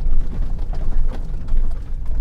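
Pickup truck driving on a gravel lane, heard from inside the cab: a steady low rumble of engine and tyres with a few faint ticks.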